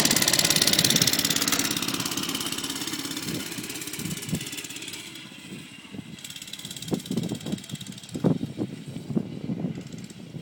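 Doodlebug mini bike's small single-cylinder engine running as the bike pulls away, its buzz loudest at first and fading over the first several seconds as it moves off, then faint and uneven.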